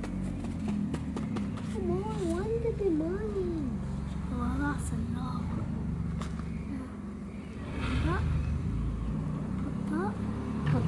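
A child's voice humming a wavering, sing-song line for a couple of seconds, with a few shorter vocal sounds later, over a steady low drone.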